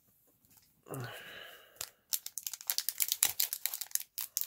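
Foil wrapper of a Magic: The Gathering draft booster pack being torn open by hand: a dense run of crackling and tearing from about halfway in.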